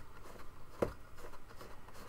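Hands handling a small plastic projector's casing on a desk, with faint rubbing and one sharp click a little under a second in.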